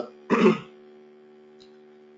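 A man clears his throat once, shortly after the start. After that only a steady low hum is heard.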